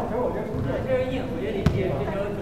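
Indistinct voices, with one sharp thud of a ball striking near the end.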